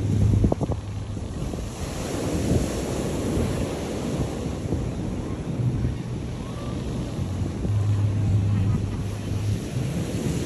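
Surf washing onto a sandy beach, with wind buffeting the microphone throughout and a stronger gust about half a second in.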